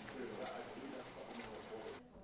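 Low, indistinct murmuring voices with a few light clicks.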